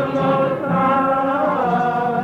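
A choir singing slow, long-held notes, with the pitch shifting a couple of times.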